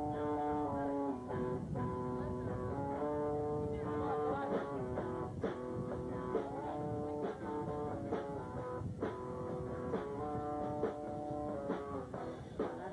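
Live band warming up: electric guitar chords held and changing every second or two, with sharp hits coming more often in the second half.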